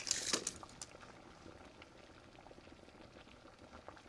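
Faint bubbling of a pot simmering on the stove. In the first second there are a few short rustles as paper prop shrimp are handled.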